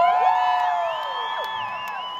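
Concert audience whooping and cheering: several long, high held calls at different pitches that swoop up, hold, then fall away, the sound fading over the two seconds.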